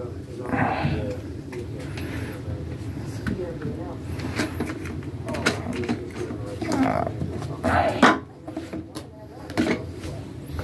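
Jars and packages being handled and set down on a shelf, with a few light knocks and some rustling, over a steady murmur of voices in the background.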